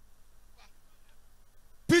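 Low background noise in a pause between shouts, then a man's loud, strained shout starting right at the end.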